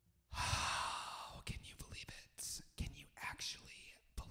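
A long, breathy sigh into a close microphone, about a second long and the loudest sound here, followed by short whispered, gasping breaths.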